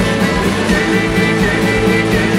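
Live blues band jamming loudly: several electric guitars, bass and drum kit playing together over a steady beat.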